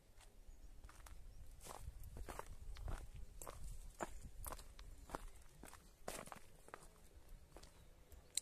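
Faint footsteps of a person walking while filming, about two steps a second, over a low rumble.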